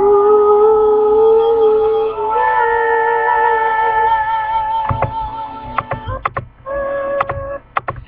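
The closing held notes of a sung song: a long steady note, overlapped for a while by a higher one, then a few sharp clicks about five to six seconds in and a shorter held note near the end.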